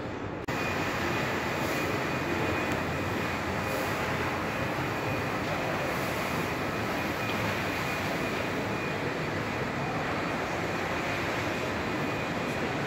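Steady rumble and hiss of a large indoor shopping mall's ambience, with a faint steady high tone. The sound steps up in level about half a second in.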